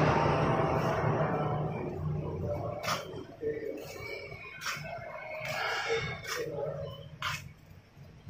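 Faint workshop background: a low steady hum and distant voices, with a few sharp clicks scattered through the second half.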